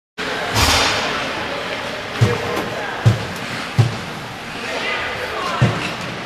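Ice hockey rink sounds: a loud scraping burst about half a second in, then four short low thuds spread over the next few seconds, with voices echoing in the arena.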